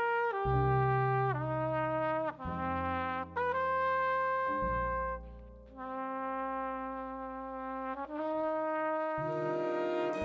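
Jazz big band playing a slow tune: saxophones and brass hold full chords that change about once a second, with short slides between notes over a bass line. Midway a trumpet plays into a microphone above the ensemble.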